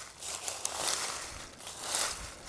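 Dry, dead perennial flower stems and leaves rustling and crackling as they are pulled out by hand, with a few faint snaps. The stems, left standing over winter, come away easily at this time of year.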